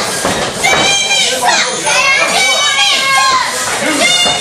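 Children in a small crowd yelling and shouting, many high-pitched voices overlapping without a break.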